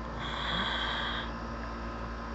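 A short breathy exhale through the nose, lasting about a second, with a thin whistling tone on top.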